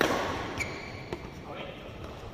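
A badminton racket hitting the shuttlecock right at the start, a sharp crack that echoes around a large hall, followed by a short high squeak of a shoe on the court floor and a lighter tap about a second in.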